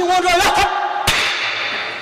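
A man's voice, then a single sharp hand clap about a second in: the clap with which a Tibetan monastic debater punctuates his challenge.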